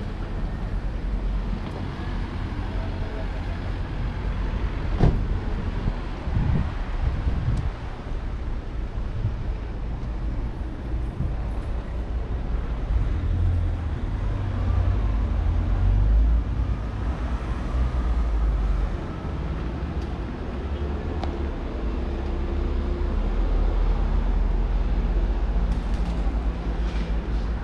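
Street ambience of road traffic: a steady low rumble of cars going by, with one sharp knock about five seconds in.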